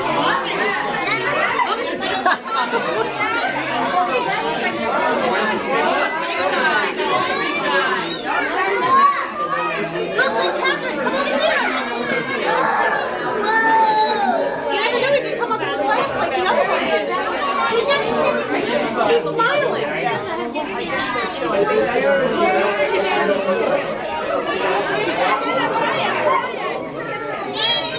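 Crowd chatter: many people talking at once, steady overlapping voices with no single speaker standing out.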